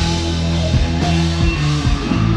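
Live rock band playing, with electric guitar and a drum kit keeping a steady beat under shifting low notes.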